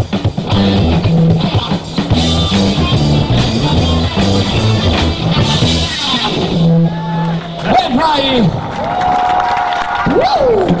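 A live rock band plays with drum kit, electric bass and guitar, and the song breaks off about six seconds in. A held low note follows, then slow swooping, gliding tones.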